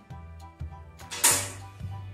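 Background music, with a domino tile set down sharply on a glass tabletop a little over a second in, a single loud click.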